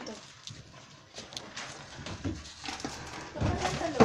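Dachshund sniffing hard along the floor at the base of a cabinet in short, quick bursts, with scuffling on the tile, as he tracks the scent of a rat. A person's voice comes in near the end.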